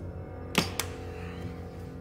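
Plastic water bottle knocked down onto a table: two sharp knocks about half a second in, a quarter second apart, the first the louder, over a soft steady musical drone.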